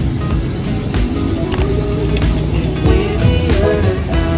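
Background music with a steady beat, laid over the vlog.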